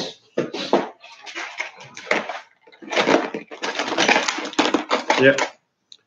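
Metal hand tools clattering and rattling in a box as they are rummaged through, in an irregular run of short clatters.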